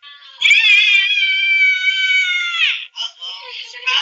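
A cat's long, high-pitched yowl that wavers at first, holds steady for about two seconds, then falls away and stops. Short voice sounds follow near the end.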